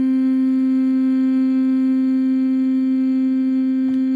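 A sampled vocal tone playing back: one sustained note held at a single steady pitch, fairly monotone, with no change or movement in it.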